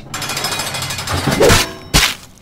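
A rapid, continuous rattling, then a single sharp slam just before the end.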